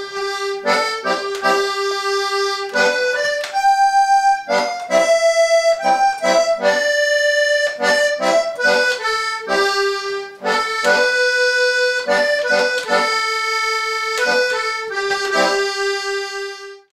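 Two-row button accordion (melodeon) playing a tune solo: a melody of quick notes mixed with longer held ones over a steady low chord, closing on a long held note near the end.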